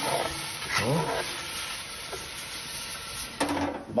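Diced onions sizzling in hot oil in a cast-iron Petromax FT9 Dutch oven, stirred and scraped with a spatula to work the browned meat residue off the bottom while the onions are glazed. The sizzle drops away shortly before the end.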